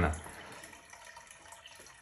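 Manual aquarium gravel-vacuum siphon drawing water out of the tank: a faint, steady run of water through the hose into a bucket as it cleans the gravel.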